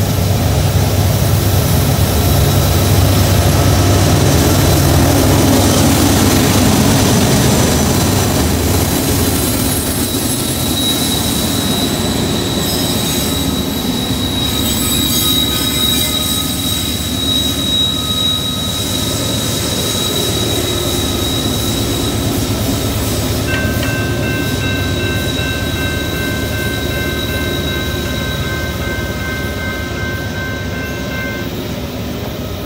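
Norfolk Southern diesel-electric freight locomotives, among them a GE AC44C6M, working hard under load up a steep grade; the engines' deep running sound is strongest in the first third. A steady high wheel squeal sets in about a third of the way through, and more squealing tones join near the end as a sanding locomotive comes up.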